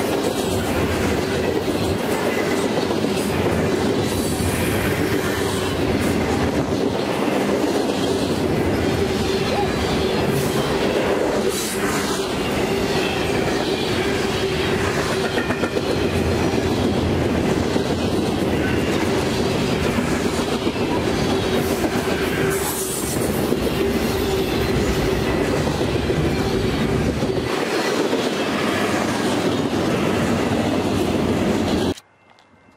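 Freight cars passing at speed: steel wheels rolling on rail in a continuous rumble, with a steady humming tone from the wheels and irregular clicks as they cross rail joints.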